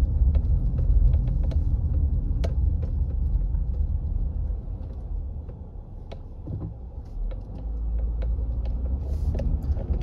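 Low rumble of a car's engine and tyres heard from inside the cabin while driving slowly, dipping quieter for a couple of seconds past the middle, with a few faint ticks.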